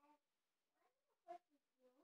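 Faint, short high-pitched vocal calls, a few in a row, some sliding in pitch, the loudest about a second in.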